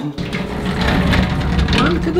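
Muffled, indistinct voices over a steady low rumble.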